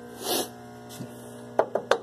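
Steady electrical mains hum, with a short breathy sniff or exhale near the start and a few brief mouth clicks near the end.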